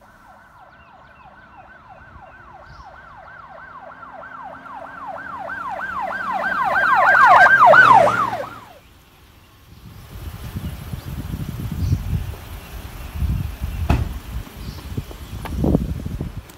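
Police siren in a fast yelp, rising-and-falling wails about three a second, growing steadily louder and then cutting off about nine seconds in. After it comes a low outdoor rumble with a few sharp thumps.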